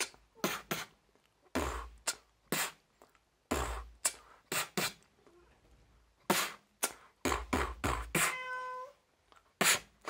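Domestic cats at play: a run of short rustling and thudding noises from scampering and scuffling, with one short, steady-pitched meow shortly before the end.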